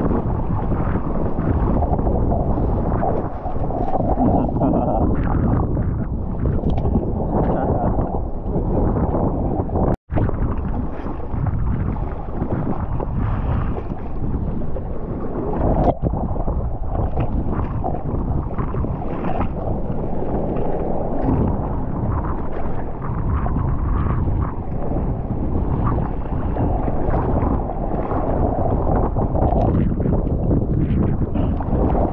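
Seawater rushing and splashing against a surfboard and a close-mounted camera as the board is paddled through choppy water, with wind buffeting the microphone. Spray breaks over the camera about midway through.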